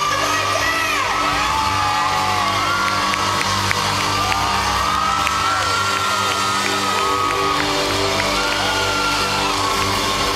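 Live pop-rock band playing through a large PA, with electric guitar and sustained tones over a steady low end. Audience members whoop and cheer over the music, heard as rising and falling high calls.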